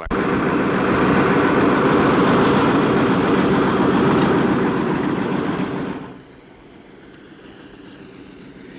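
De Havilland Beaver seaplane's Pratt & Whitney Wasp Junior radial engine and propeller running as it taxis on its floats, a loud steady drone. About six seconds in the sound drops sharply and goes on much quieter.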